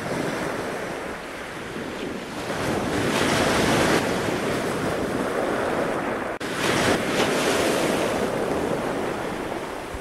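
Wind buffeting the microphone over open sea and rushing surf, a steady noise that swells about three seconds in and breaks off for an instant a little after six seconds.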